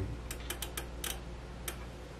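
About seven light, sharp clicks spread over two seconds as a grounded test probe is touched against the footswitch wires of a Genz Benz Diablo 100 tube amplifier to trigger its switching functions. A steady low hum from the powered-up amp runs underneath.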